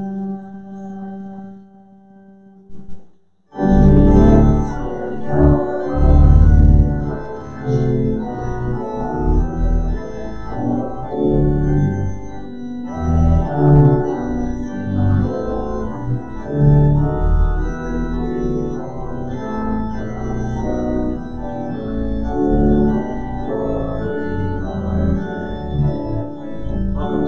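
Organ music: a held chord dies away over the first few seconds, and after a short break about three and a half seconds in, the organ starts playing again, a busy run of notes over a deep bass.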